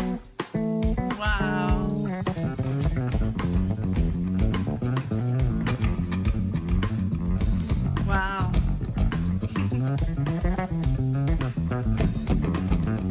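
Live rock band playing, with electric guitar over a steady bass guitar line. Twice, held high notes waver with a wide vibrato: about a second and a half in, and again about eight seconds in.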